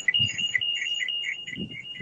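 A steady high electronic tone with a rapid pulsing beep under it, about five beeps a second, like a phone alarm or ringtone.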